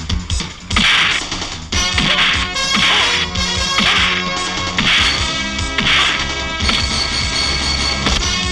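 Dramatic film background score with a loud, sharp whip-like hit about once a second: the dubbed punch-and-swish sound effects of a fight scene.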